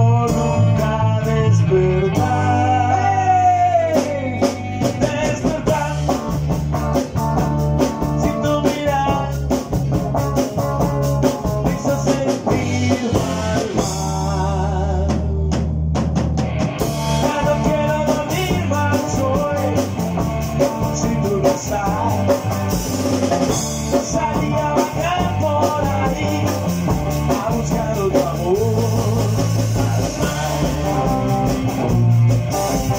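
A small rock band playing live: drum kit with cymbals and snare, and guitars, in a steady, full-band groove.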